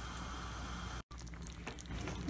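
Chicken thighs simmering in orange juice and butter in a frying pan: a steady quiet sizzle under a glass lid, broken off abruptly about a second in, then a softer crackle and bubbling of the juice.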